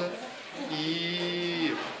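A man's drawn-out hesitation sound, a single held 'éééé', lasting just over a second with a slight rise and fall in pitch.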